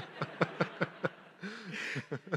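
A man laughing quietly in short breathy pulses, about five a second, with a brief voiced laugh near the end.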